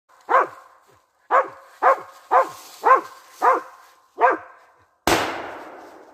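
A dog barking up a tree at a treed squirrel: seven sharp barks, about two a second. About five seconds in a single gunshot goes off, with a long fading tail.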